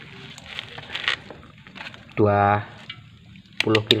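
Light handling of wires and tools, then a quick run of sharp clicks near the end as a digital multimeter's rotary range switch is turned to the 20 kΩ resistance setting.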